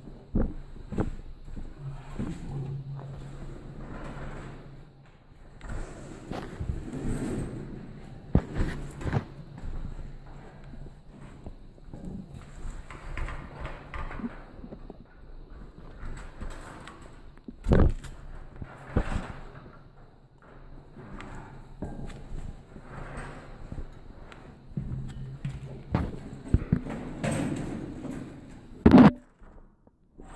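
Irregular knocks, bumps and scraping of a person clambering through a cramped space over metal mesh and timber, with a louder knock a little past halfway and another near the end.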